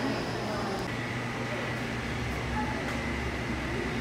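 Steady mechanical hum and hiss, with a faint thin high tone that comes in about a second in.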